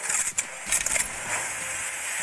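Sound-effect track of a gun intro animation: a quick run of sharp metallic clicks and clacks in the first second, over a steady rushing whoosh.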